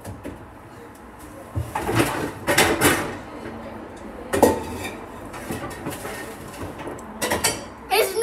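A few short clattery, rustling bursts from small plastic jelly-fruit cups being handled and the jelly eaten.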